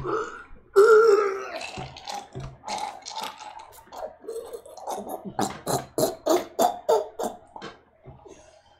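A man gagging with a burp-like retch in disgust. Later comes a run of quick, sharp knocks at about three a second: a cleaver chopping worms into a paste.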